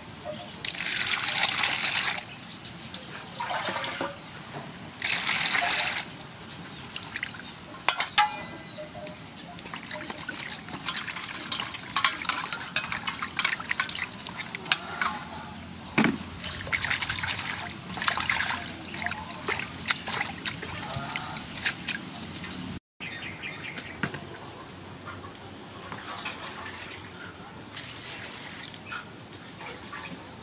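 Water poured into an aluminium basin in two pours of about a second each, then hands washing cilantro and tomatoes in the water with irregular splashing and sloshing.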